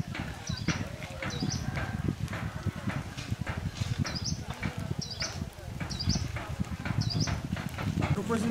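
Footsteps of a group walking on a stony, muddy trail, with a bird repeating a short high chirp roughly once a second. Faint voices of the walkers are mixed in.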